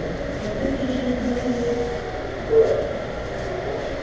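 A steady low rumble, with a brief louder sound about two and a half seconds in.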